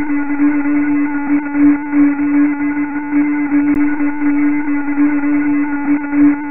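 Sonified sunquakes: the Sun's internal sound waves, which pulse with periods of about five minutes, shifted up in frequency into the hearing range. They play back as a steady hum with one strong low note and fainter higher tones above it, the loudness swelling and fading unevenly.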